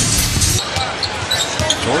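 Arena music that cuts off about half a second in, then basketball court sounds in a large hall, with a ball bouncing on the hardwood.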